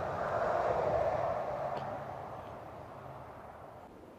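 A distant engine drone passing by, swelling during the first second and then fading slowly away.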